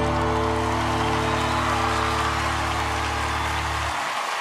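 A band's final chord is held steadily, then cuts off suddenly near the end. Audience applause and cheering run underneath.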